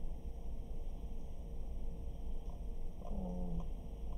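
Steady low background rumble, with a short, low hummed murmur from a man's voice about three seconds in.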